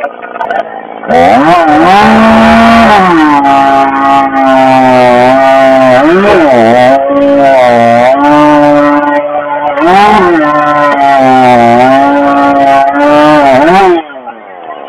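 Husqvarna 562 XP two-stroke chainsaw opened up to full throttle about a second in and cutting through a log. The engine pitch sags under load as the chain bites into the wood and picks back up between cuts, several times over.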